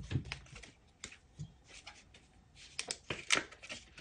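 Paper bills and cash envelopes being handled: soft scattered rustles and small clicks, with a cluster of sharper clicks near the end.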